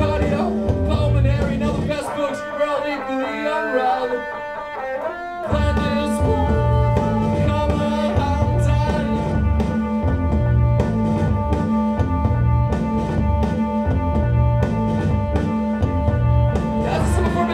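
Live rock band playing an instrumental passage. About two seconds in, the bass and drums drop out, leaving pitched lines that glide upward; a few seconds later the full band comes back in under long, held notes.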